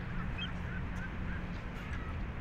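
Steady low outdoor rumble with a run of about six short, faint calls from a water bird, spread over two seconds.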